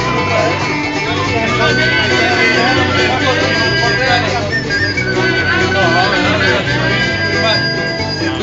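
Live band playing an instrumental passage of a country-style song between sung lines, with guitars strumming and held notes over a steady bass.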